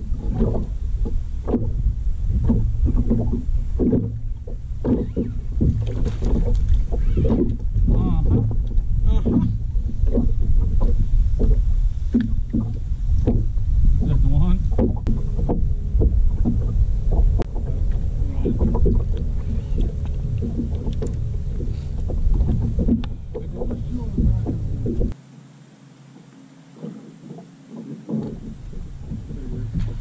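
Wind rumbling on the microphone over a boat on choppy water, with irregular slaps of small waves against the hull. The rumble drops away sharply near the end.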